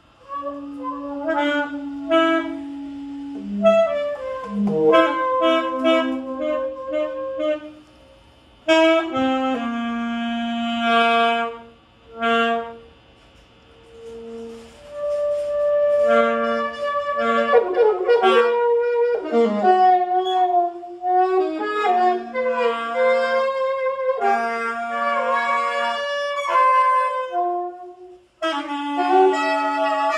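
Two saxophones, at least one of them an alto, playing a live duet, often in two-part harmony. Long held notes alternate with quick runs, with a couple of short breaks.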